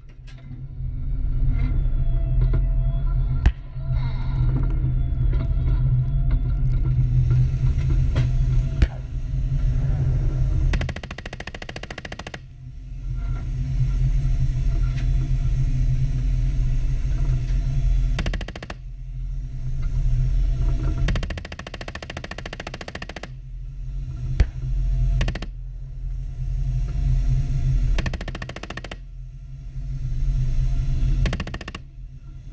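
A tank's engine and tracks rumble heavily as it drives, the rumble rising and falling. Several short bursts of rapid rattling strokes come through over it.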